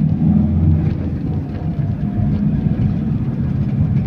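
Steady low rumble of a moving road vehicle, engine and tyre noise heard from inside the vehicle.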